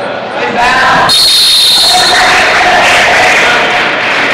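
A referee's whistle blows about a second in and is held for about a second, amid spectators and coaches yelling in a large echoing gym.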